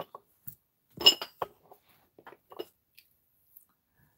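A few light clicks and knocks of small objects being handled on a desk, with one small clink about a second in.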